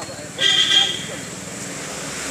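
A vehicle horn honks once, a short steady toot of a little over half a second, about half a second in, over background street noise.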